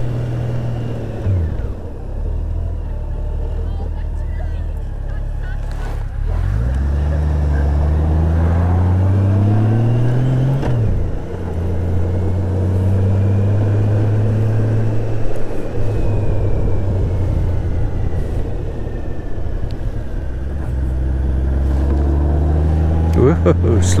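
Honda GL1800 Gold Wing's flat-six engine heard from the saddle while riding. The revs drop about a second in, then climb steadily for about four seconds, fall sharply at a gear change, and settle to a steady cruise.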